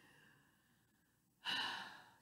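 A man's single audible breath, a short sigh about one and a half seconds in, after a stretch of near silence.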